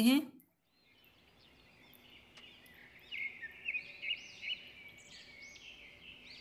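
Birds chirping faintly in the background: a quick run of short, arching, high chirps, several a second, starting about three seconds in over a low hiss.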